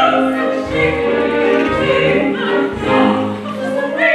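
Stage performance from an opera or operetta: voices singing with an orchestra, low notes recurring about once a second beneath the melody.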